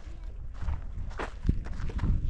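Footsteps on a gravelly dirt road, several steps about half a second apart, over a low rumble.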